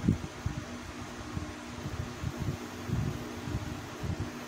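Steady low machine hum with uneven low rumbling underneath, as background noise with no distinct event.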